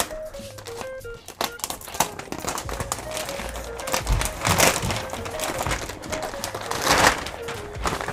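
Plastic mailer bag crinkling as it is slit with a small pocket knife and pulled open by hand, with two louder rustles about four and a half seconds in and again about seven seconds in. Background music with a steady melody plays underneath.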